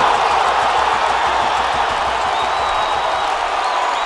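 Football stadium crowd cheering a goal: a dense, steady roar of shouting and clapping that eases slightly as the seconds pass.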